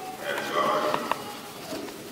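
A man's voice speaking his marriage vows into a handheld microphone, in short phrases.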